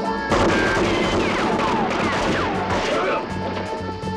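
A dense volley of rapid rifle gunfire lasting about three seconds, beginning just after the start, with high gliding, falling whines through it. Background music runs under it.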